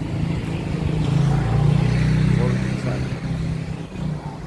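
A motor vehicle's engine running close by, growing louder to a peak around the middle and then fading: a vehicle passing.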